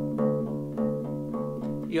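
Electric bass plucking a repeated D on the third string, fifth fret, in steady eighth notes, about three a second: a root-note accompaniment on the D major chord.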